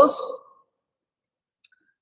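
A man's voice trailing off at the end of a phrase, then near silence with one faint short click about one and a half seconds in.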